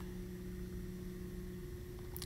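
Faint room tone with a low, steady hum made of two tones. The lower tone stops about one and a half seconds in.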